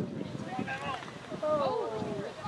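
Spectators' voices calling out, then one long drawn-out cry from about halfway through.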